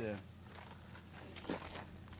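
A short spoken 'yeah', then faint outdoor background with a steady low hum and one brief sharp sound about one and a half seconds in.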